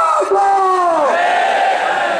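A man shouting slogans into a microphone in two long, drawn-out calls, the first ending about a second in, with a crowd shouting along.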